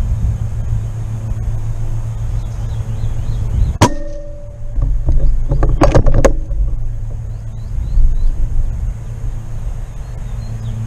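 A Benjamin Kratos .25-calibre PCP air rifle fires once, a sharp crack about four seconds in. A second or two later comes a quick run of metallic clicks as the action is cycled to chamber the next pellet. A steady low rumble runs underneath.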